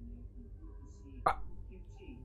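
A person's short, sharp "uh", like a hiccup, about a second in, over faint background voices and a low hum.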